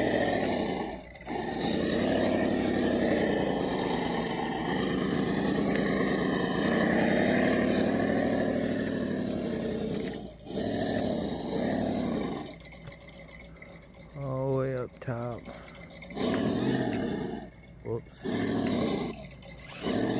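A 1/10-scale RC rock crawler's electric motor and gears whining under load as it climbs a steep dirt slope: steady for the first ten seconds, then in short throttle bursts.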